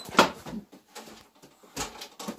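Two sharp knocks about a second and a half apart, the first the louder, from handling at a wire-topped pigeon basket as a bird is taken out, with faint rattling between.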